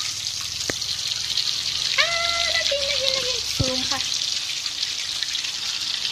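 Balls of dough deep-frying in a wok of hot oil, a steady sizzle throughout. A short high-pitched voice is heard about two seconds in, and there are two sharp clicks.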